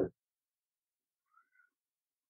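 Near silence: room tone, with one very faint, short squeak a little over a second in.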